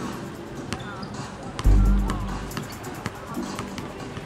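A basketball bouncing on a concrete court as it is dribbled, in a run of sharp bounces, under background music with a deep bass hit about two seconds in.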